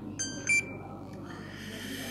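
Two short electronic beeps, each a cluster of several high steady tones, about a quarter second apart, the second louder, with a faint tone lingering briefly after it; then low room noise.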